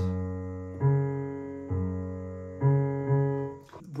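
Digital piano playing a slow practice run of low notes, about five in four seconds, each ringing on until the next is struck.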